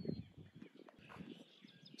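Quiet rural outdoor background with faint distant bird chirps, one brief high chirp near the start.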